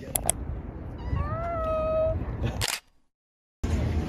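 Two quick clicks, then a single meow-like call that rises and then holds steady for about a second. A sharp click follows, and the sound drops to silence for most of a second before steady background noise returns.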